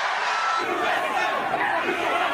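A large crowd cheering and shouting. About half a second in, the sound changes to a different, closer crowd yelling, with single voices standing out.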